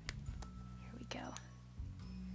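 A baby outfit being handled and fastened: a few small sharp clicks early on the snaps, then a short burst of fabric rustling a little past a second in.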